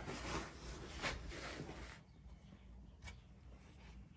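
Faint rustling and shuffling with a few soft knocks, from a person shifting about under a car and handling the camera.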